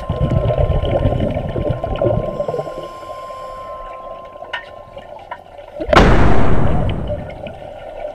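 Underwater sound of scuba divers' exhaled bubbles rushing from their regulators, with one loud burst of bubbles about six seconds in that fades over a second or two. A faint steady hum lies underneath.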